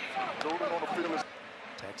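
A man's voice commenting on a televised football game for about the first second, then a short lull of low background noise.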